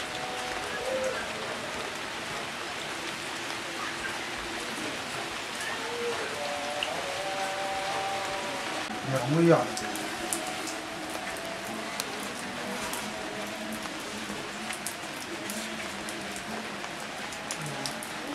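A steady hiss of background noise with scattered light ticks, under faint, indistinct voices. One louder voice sound comes about halfway through.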